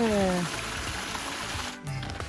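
Small stream of water running and trickling through a channel beneath a log, a steady rushing hiss that cuts off suddenly near the end. A voice trails off at the very start.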